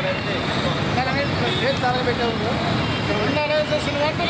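Street traffic noise with the voices of a marching crowd over it, people calling out in wavering tones.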